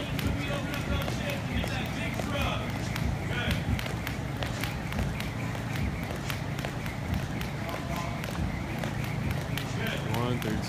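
Jump rope slapping the gym floor in a steady, quick rhythm of clicks as she skips, over a low steady hum.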